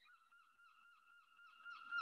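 Near silence, with a faint, steady, slightly wavering high whine in two tones, a little louder near the end.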